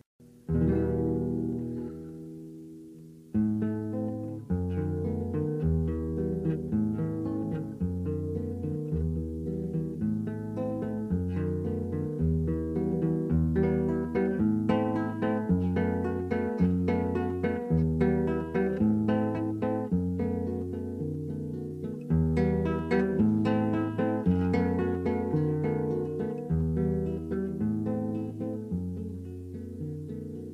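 Acoustic guitar playing the instrumental introduction to a song. A chord struck just after the start rings out for a few seconds, then a steady strummed rhythm begins over a repeating pattern of low bass notes.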